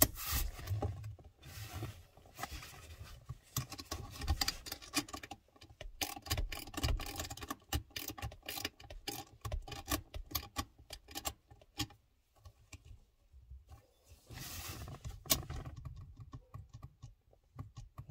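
Irregular light metallic clicks and rattles of a spanner working the handbrake cable adjuster nut at the base of the handbrake lever, with a short lull about twelve seconds in.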